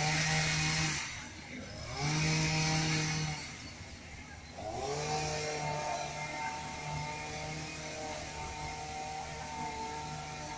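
A small two-wheeler engine revved three times, each rev climbing quickly in pitch and then held steady. The first two are short, about a second each, and the third is held for about five seconds.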